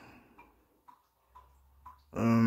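Near silence: room tone with faint, evenly spaced ticks about twice a second.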